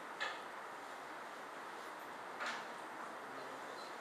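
Quiet room tone: a steady faint hiss with two brief soft noises, one just after the start and one about two and a half seconds in.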